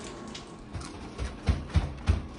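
Handling noise: a few soft thumps and rustles in the second half, over faint background noise.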